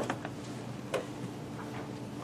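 A few sharp clicks and taps, the loudest right at the start and another about a second in, over a steady low room hum.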